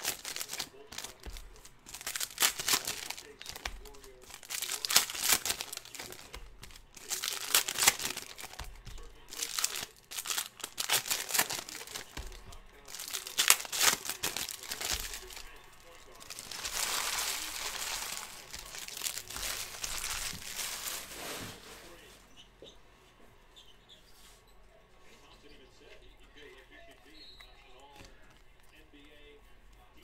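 Plastic trading-card pack wrappers being torn open and crinkled by hand, in an irregular string of rustling bursts with a longer stretch of crinkling about two-thirds of the way in. For the last several seconds the handling is much quieter.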